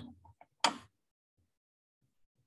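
A single short, sharp click about two-thirds of a second in, after a voice trails off, then silence.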